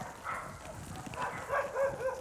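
A pack of dogs making several short, faint, high whining calls that rise and level off, scattered through the moment.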